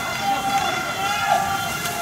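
Men's voices shouting, one long held call that wavers slightly in pitch.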